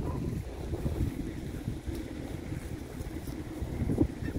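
Wind buffeting the microphone, a low, uneven rumble that rises and falls.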